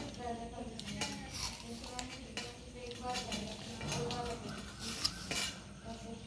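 Metal curtain eyelets clinking and scraping against a metal curtain rod as a curtain is threaded onto it: a run of irregular clicks.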